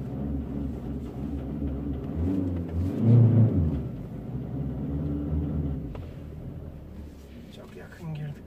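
Volkswagen Caddy 2.0 TDI diesel engine running at low speed, heard from inside the cabin as the van manoeuvres slowly in reverse. Its hum swells briefly about three seconds in, then settles lower towards the end.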